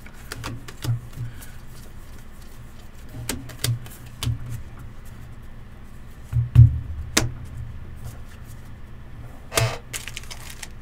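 Hands handling a stack of trading cards over a table: scattered light clicks and taps as the cards are flipped and sorted, with one louder thump about six and a half seconds in, over a low steady hum.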